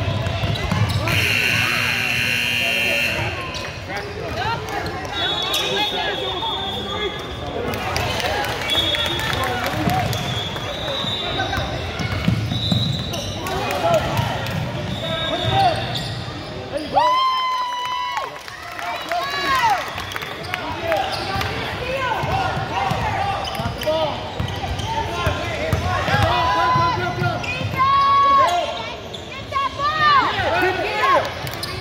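A basketball dribbled on a hardwood gym floor, under a hubbub of players' and spectators' voices echoing in the gym, with a few short squeaks about halfway through and near the end.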